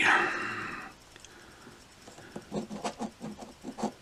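Coin scraping the latex coating off a scratch-off lottery ticket in short, irregular strokes, starting about two and a half seconds in after a brief hush.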